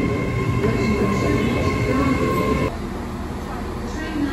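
Great Western Railway Hitachi Intercity Express Train moving along the platform, a steady rumble with a high steady whine. The sound cuts off abruptly about two-thirds of the way in, leaving a quieter station background.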